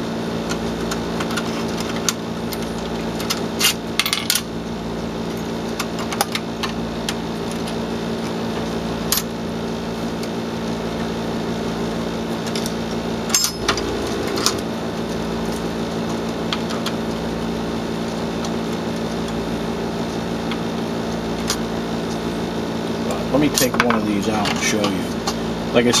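Scattered light clicks and taps of a screwdriver and small parts being handled on a metal LED grow-light fixture, more frequent near the end, over a steady background hum.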